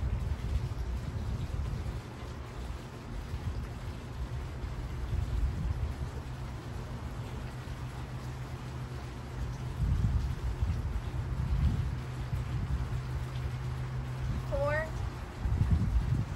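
Wind buffeting an outdoor microphone: a low rumble with a steady hum under it, surging about ten seconds in, again a little later, and just before the end. Near the end comes one short rising high call.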